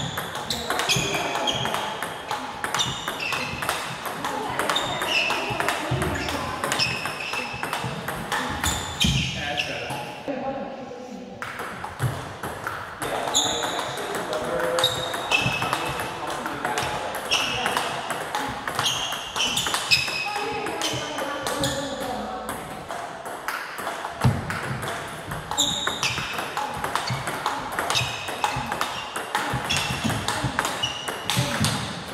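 Table tennis rally in a blocking drill: the plastic ball clicks off the table and the rubber of two bats at a steady rhythm, about one or two hits a second. There is a short break about ten seconds in.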